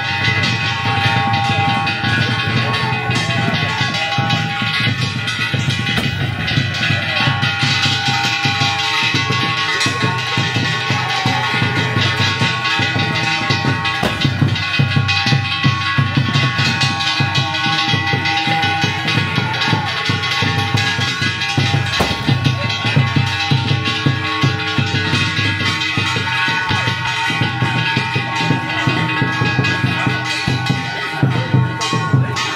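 Loud music with drumming and steady, sustained ringing tones. It is most likely the danjiri float's festival drum-and-gong accompaniment.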